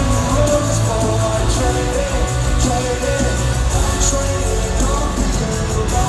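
Live rock music played loud over an arena PA and heard from the audience, with a heavy bass and a voice singing over the band.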